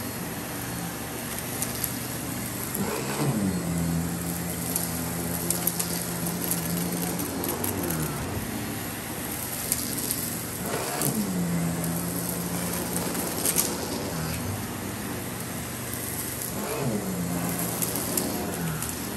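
Miele vacuum cleaner running with its powered floor brush on a rug, a steady hum whose pitch dips and recovers about four times as the head is worked back and forth. Occasional sharp ticks of debris being sucked up.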